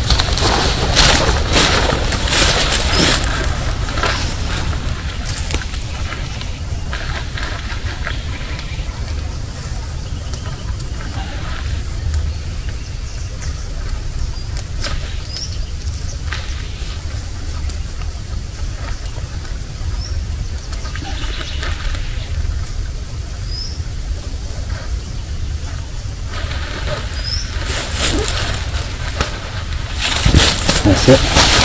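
Hammock tree strap and quick-connect buckle handled and pulled tighter: rustling and clicks in the first few seconds and again near the end, over a steady low rumble. A few short high chirps from birds come in between.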